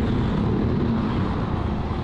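A motor vehicle engine running close by, a steady low drone over street noise.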